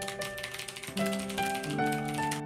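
Rapid typing on a computer keyboard, a fast run of key clicks.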